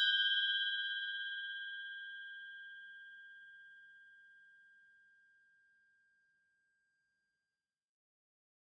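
A single bell ding, struck just before and left ringing, fading out over about five seconds.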